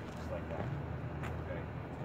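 Steady low hum of urban background noise, with faint, indistinct speech and one light tap about a second in.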